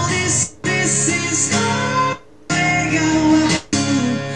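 Live acoustic rock music: strummed acoustic guitar with a male lead vocal. The sound drops out briefly three times, as if playback were stopped and restarted.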